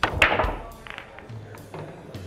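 Pool break shot: a sharp crack of the cue ball striking the rack, then a quick clatter of balls knocking together, heard over background music.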